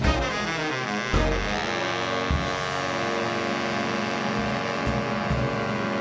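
Jazz big band of saxophones, trumpets and trombones playing, then holding one long sustained chord from about a second in, with a few low hits beneath. This is the closing chord of the tune.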